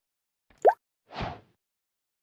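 Two short edited-in sound effects: a quick bloop rising in pitch about two-thirds of a second in, then a brief soft whoosh.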